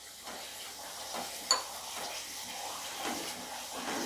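Thick almond halwa sizzling in a nonstick pan as it is stirred with a wooden spatula, with a single light clink about a second and a half in.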